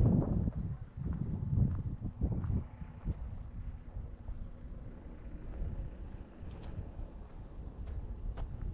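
Wind buffeting the camera's microphone: a gusty low rumble, strongest at the very start, with a few faint footfalls on a dirt path.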